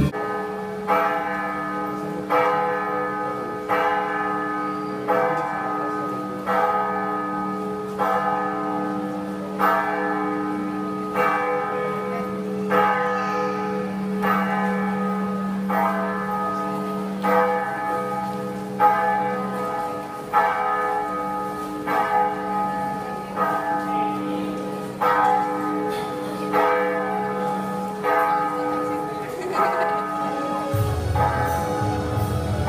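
Church bell tolling, struck about once every second or so, with each stroke ringing on into the next.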